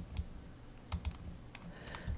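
About five faint, sharp clicks of a computer mouse button, some in quick pairs, as brush strokes are dabbed on in a photo editor.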